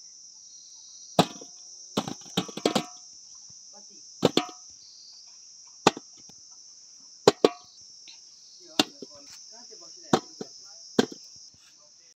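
A steady, high-pitched insect chorus of crickets, broken by about a dozen sharp knocks at uneven intervals. A few of the knocks carry a short ringing tone.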